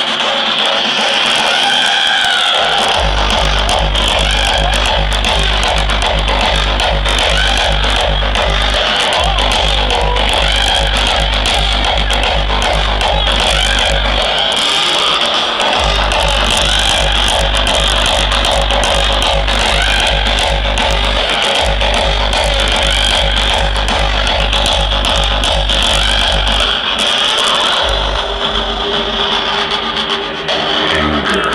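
Hardstyle DJ set played very loud over a festival sound system, recorded close up on a phone. A pounding kick drum comes in about three seconds in, beating about two and a half times a second, and drops out briefly a few times before coming back.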